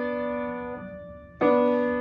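Piano chord ringing and fading away, then another chord struck about one and a half seconds in and held.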